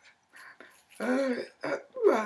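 A woman's voice: a short, pitched vocal sound about a second in and a briefer one near the end, after a near-silent first second.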